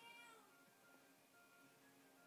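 Near silence: faint room tone, with a brief, faint, high-pitched falling sound at the very start.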